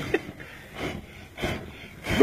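Quiet background with two short, faint vocal sounds about half a second apart in the middle, between louder stretches of talk and laughter.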